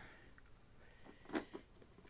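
Faint handling noise: a few light clicks and a short rustle or knock at about a second and a half in, as a hand comes onto the plastic base of the scale.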